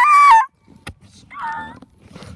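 A teenage boy's loud, high-pitched squealing laugh, likened to a tire screech, held for about half a second, then a shorter, quieter squeal about a second later.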